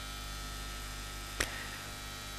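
Steady electrical mains hum with a faint hiss, broken once by a short click about a second and a half in.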